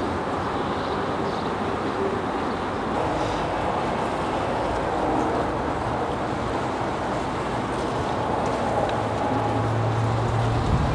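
A mass of honey bees buzzing around an open hive: a steady, dense hum.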